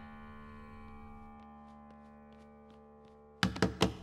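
A held chord of film score music slowly fading away, then, near the end, a quick run of sharp, loud knocks on a door.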